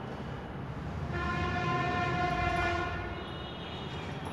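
A horn sounds one steady tone for about two seconds, starting about a second in, over a low background rumble.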